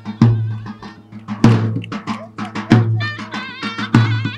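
Live Turkish folk dance music: a davul bass drum strikes a heavy beat about every 1.2 seconds with lighter strokes between, under a wind instrument playing a wavering, ornamented melody.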